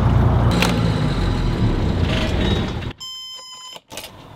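Lehman marine diesel engine idling, with wind on the microphone. About three seconds in it gives way to the engine panel's steady, high-pitched alarm buzzer, sounding for under a second as the engine is shut down.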